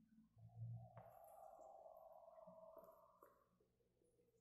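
Near silence: faint open-air quiet with a faint tone held for about three seconds.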